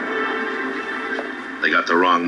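Background music from a 1960s TV drama with sustained, held notes, played through a television speaker, giving way to a man's voice from the show about one and a half seconds in.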